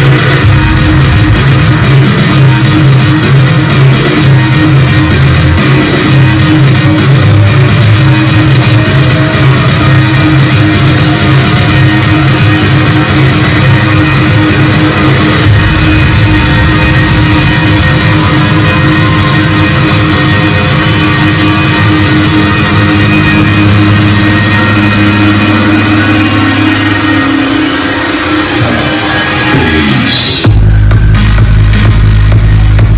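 Loud electronic dance music from a club sound system in a DJ set, recorded close to full level on a phone. Over the last several seconds a rising sweep builds up toward a drop.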